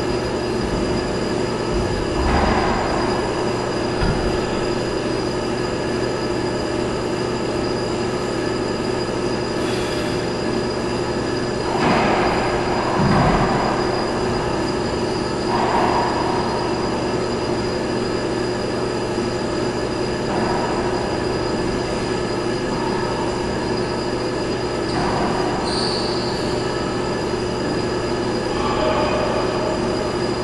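A steady mechanical drone with several constant whining tones runs throughout. Over it come a few brief knocks and short bursts of noise from racquetball play on the court.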